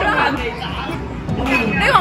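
Speech and chatter over the hubbub of a busy indoor arcade.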